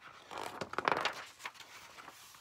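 Pages of a paperback picture book being turned by hand: paper rustling, loudest around a second in, then settling to a soft rustle.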